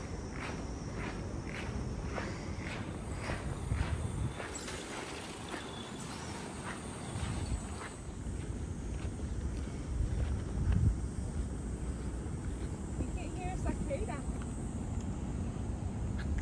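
Footsteps on pavement, about two steps a second, fading out after about five seconds, over a low rumble.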